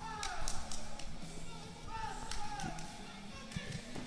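Faint background of distant voices in a large room, with scattered light taps and knocks.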